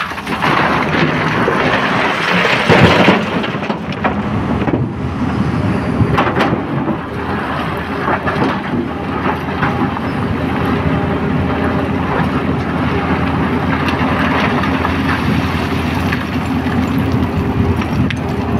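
Tata Hitachi 210 hydraulic excavator's diesel engine running steadily under load. In the first few seconds, a load of broken rock rushes from the bucket into a steel dump-truck body, loudest about three seconds in. Scattered knocks follow as the bucket digs into the rock pile.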